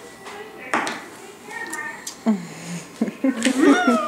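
Voices: low, quiet voice sounds early on, then a child's loud, exaggerated vocal sound rising in pitch, with laughter, in the last second. A single light knock comes just under a second in.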